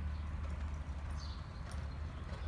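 Faint hoofbeats of a ridden horse on the soft dirt of an arena, over a steady low hum.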